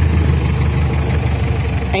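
Mahindra CJ500 Jeep's engine idling steadily, heard from inside the cabin.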